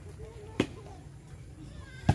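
A plastic volleyball struck once by a player's hands about half a second in, a single sharp smack during a rally.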